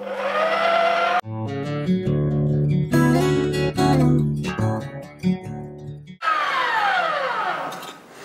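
Electric meat grinder motor starting with a rising whine. After about a second a plucked-guitar music jingle takes over for some five seconds. Then the grinder's whine returns, its pitch falling steadily as it grinds meat.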